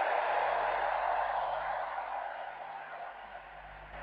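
Crowd noise from a congregation: an even, hiss-like wash of many voices or hands that fades away over about three seconds after a prayer's close.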